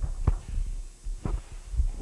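Low steady hum with three soft thumps, about a quarter second in, just past a second in, and near the end: handling noise from a handheld microphone.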